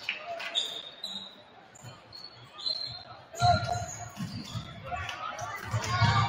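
A basketball being dribbled on a hardwood gym floor, bouncing repeatedly from about halfway through. Sneakers squeak on the court.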